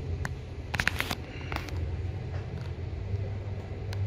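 Otis hydraulic elevator cab travelling down, with a steady low hum of the ride and a few sharp clicks in the first second and a half.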